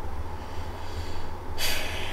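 A man's short, sharp breath through the nose, about half a second long, near the end, over a steady low hum.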